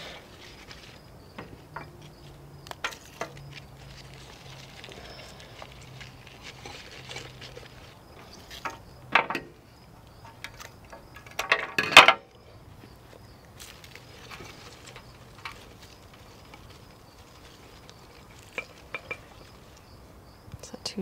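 Cut flower stems being handled and pushed into a glass vase: leafy foliage rustling, with light clinks against the glass, and louder bursts of rustling about nine seconds in and again around twelve seconds.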